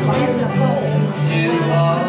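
Acoustic guitars strumming together in a country tune, with an evenly pulsing low bass note.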